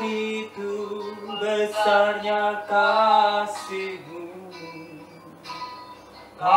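A male voice singing a slow worship song in long held notes over soft instrumental backing.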